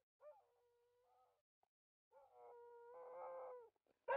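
Faint dog whining in drawn-out cries: a short one, a pause of about half a second, then a longer, louder one.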